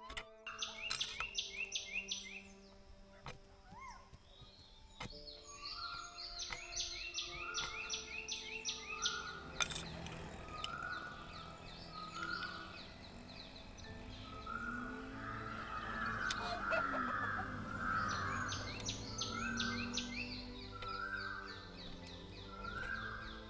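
Birds calling: bursts of rapid, high, short chirps, joined from about ten seconds in by a lower call repeated roughly once a second. Faint background music with held tones runs underneath.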